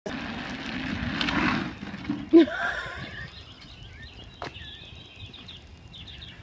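Hard plastic wheels of a Big Wheel-style trike rolling on asphalt, then a sudden short shout about two seconds in, the loudest moment.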